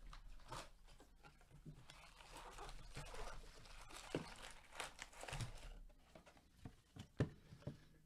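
Cardboard trading-card box being torn open and its foil-wrapped card packs pulled out and handled: irregular tearing, crinkling and rustling with a few short knocks, the loudest a sharp knock about seven seconds in.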